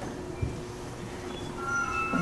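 Low room noise with a soft thump about half a second in. Near the end a held musical note sets in, the start of the accompaniment for the next song.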